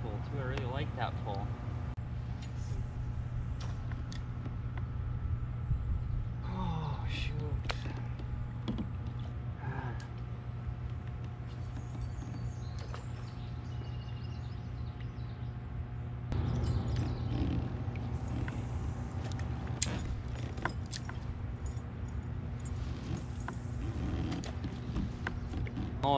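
Steady electrical hum of a power substation, a low drone with fainter higher tones held throughout. A man's voice murmurs briefly a few times, and small clicks come now and then.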